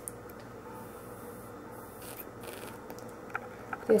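Faint sucking of a thick strawberry banana smoothie through a clear plastic straw, a couple of short draws around the middle, over a low steady hum. A few small clicks come near the end.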